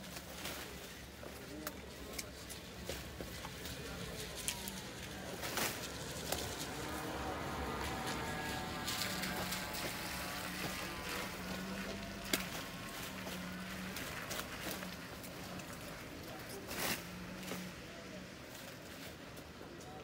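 Rustling and snapping of leafy castor oil plant stalks as they are torn up by hand, with scattered cracks and clicks throughout. A car drives past on the wet road, louder around the middle.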